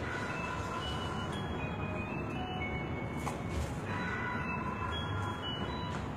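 A toddler blowing a small harmonica: wavering chords of several notes together over breath noise, shifting in pitch, with a short break about three seconds in.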